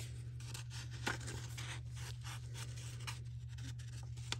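Sheets of old paper rustling and sliding as the pages and inserts of a handmade paper journal are handled and a folded paper piece is worked out of a pocket, with a few light taps. A steady low hum runs underneath.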